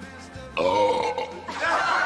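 A man's loud, drawn-out burp lasting about a second, with the pitch sagging as it goes, over background music.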